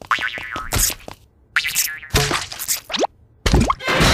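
Cartoon sound effects: a quick string of springy boings and swishes, several with fast rising pitch, over music.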